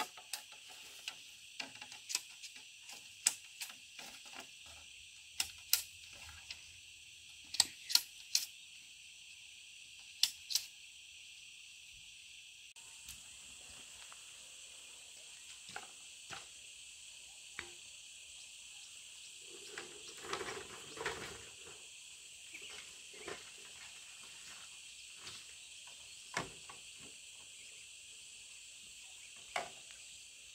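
Sharp hollow knocks and clacks of bamboo poles being handled and set against each other, most of them in the first ten seconds, with a short denser clatter about twenty seconds in. A steady high chorus of insects runs underneath.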